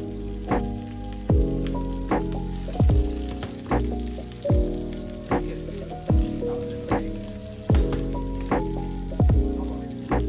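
Chicken wings and ginger sizzling as they fry in a non-stick pan, stirred with chopsticks. Instrumental background music with a soft beat about every 0.8 s and held chords sits over it and is the loudest sound.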